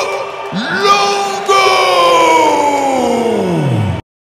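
A man's long drawn-out call over the arena PA with the crowd cheering beneath it. The call is held on one note, picks up again with a short rise, then slides steadily down in pitch for about two seconds before cutting off abruptly.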